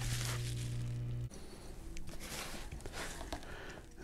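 A steady low hum stops abruptly about a second in, followed by faint rustling and light clicks of cardboard packaging being handled.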